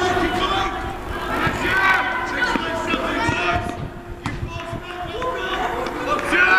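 Open-air shouting from football players and spectators: short, loud calls that rise and fall in pitch, over a steady murmur. A single sharp knock comes about four seconds in.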